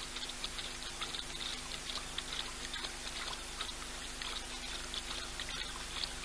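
Young male lion lapping water, a quick run of small wet clicks and splashes, a few a second, over a faint steady hum.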